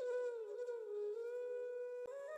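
A single held musical note, wavering slightly in pitch.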